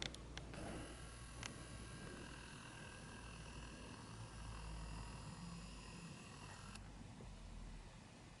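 Faint room tone: a low hum and a faint steady hiss that cuts off suddenly near the end, with a few light clicks at the very start and one more about a second and a half in.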